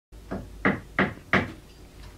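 Four evenly spaced knocks on a wooden cabinet, about three a second, each dying away quickly.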